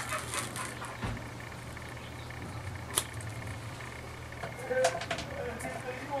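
Adhesive tape being peeled and rolled off a lace wig strap by hand: faint rustling with a few light clicks, one sharper click about halfway, over a low steady hum.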